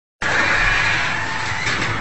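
Police siren wailing, its pitch falling slowly, over a steady rush of noise.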